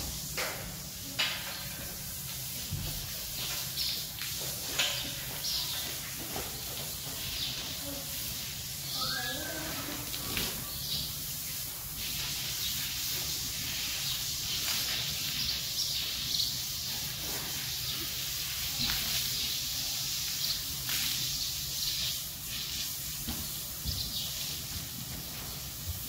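Water from a garden hose rinsing a horse's coat: a steady spray hiss that grows louder about halfway through, with a few light knocks in the first half.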